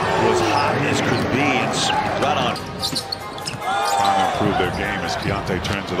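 Basketball game sound on a hardwood arena court: a ball bouncing, over crowd noise and voices.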